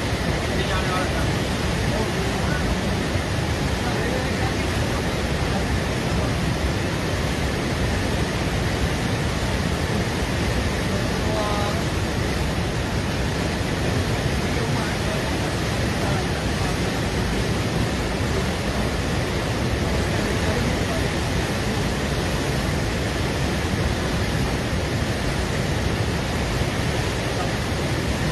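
Beas river in full flood: a steady, loud roar of rushing, churning water. Faint voices come through here and there.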